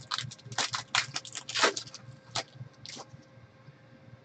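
Topps Finest football cards being shuffled through by hand. The cards slide and flick against each other in a quick run of crisp rustles over the first two seconds, then a few single flicks.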